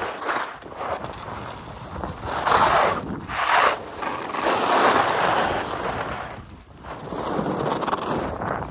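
Skis scraping over groomed snow through a run of turns, the noise swelling and fading with each turn, with wind buffeting the microphone.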